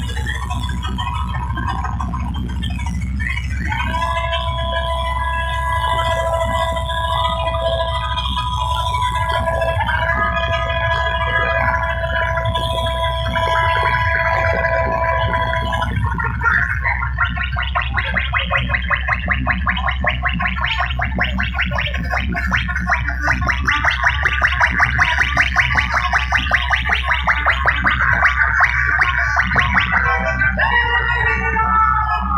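Electronic dance music played very loud through a big DJ sound system, with heavy bass throughout. Held synth notes come in about four seconds in. After about sixteen seconds they give way to a fast pulsing stutter that grows louder toward the end.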